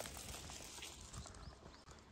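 Faint footsteps of a person walking on a gravel path, irregular light crunches and clicks over a steady outdoor hiss, quieter in the second half.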